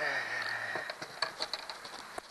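A man's brief wordless vocal sound, under a second long, followed by a handful of light splashes and taps from a catfish held at the water's surface beside a canoe.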